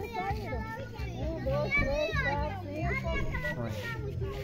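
Children's voices chattering and calling out, high-pitched and overlapping, over a low steady hum.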